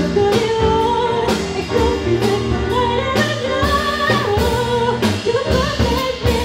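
A woman singing into a microphone with a live band: electric guitar, bass guitar, drum kit and keyboard. Her melody moves over sustained chords, with regular drum hits.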